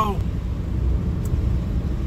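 Steady low road and engine rumble inside a moving car's cabin.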